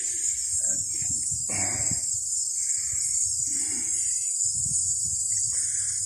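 Insects buzzing steadily in a high-pitched chorus, with soft, irregular rustles close by about once a second.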